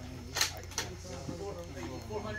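Indistinct voices of people talking in the background over a low steady hum, with one short sharp sound about half a second in.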